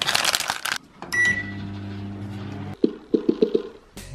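A plastic snack bag crumpled by hand with a loud crinkle, then a short high beep and a steady electric hum that cuts off suddenly, followed by a quick run of about six clicks.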